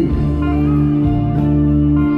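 Live band playing through a PA: electric guitar over a bass and drum backing, an instrumental passage of held notes without vocals.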